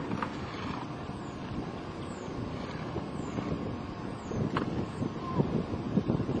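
Hard plastic wheels of a toddler's ride-on toy rolling and scraping over asphalt, a steady rough rumble, with wind on the microphone.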